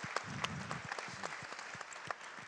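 Audience applause, dense clapping that thins out and dies down near the end.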